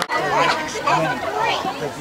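Several people talking at once, their overlapping voices forming indistinct chatter, after a momentary dropout at the very start.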